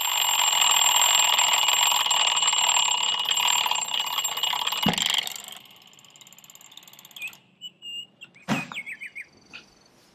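An alarm clock ringing loudly and steadily for about five and a half seconds. A thump comes about five seconds in, and the ringing cuts off half a second later, leaving only faint rustling and a brief short sound.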